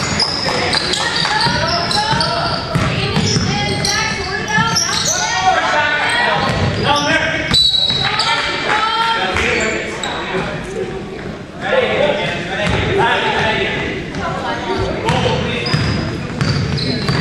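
Basketball being dribbled and bounced on a gym floor while players and spectators call out over one another, echoing in a large hall.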